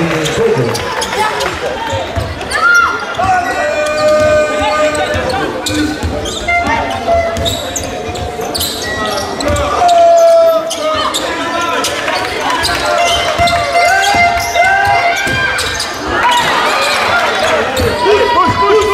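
Live basketball play in an echoing gym: the ball bouncing on the hardwood court again and again, with sharp short squeaks and voices calling out over it.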